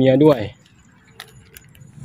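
A man's voice for about half a second, then a quiet background with two faint, short clicks.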